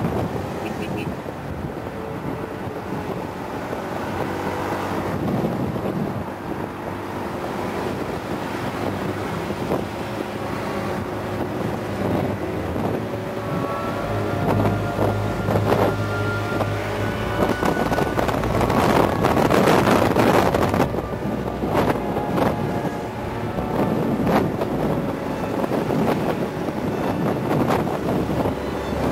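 Wind buffeting the microphone while riding a motorbike in traffic, with the bike's engine and road noise running underneath; the wind swells louder for a few seconds past the middle.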